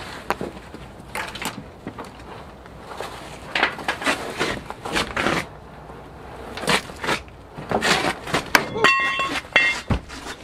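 The bench seat of a 1985 Ford F-150 being wrestled out of the cab: fabric rustling with irregular knocks, scrapes and clunks of the seat frame against the cab, busier and louder in the second half, with a short squeak near the end.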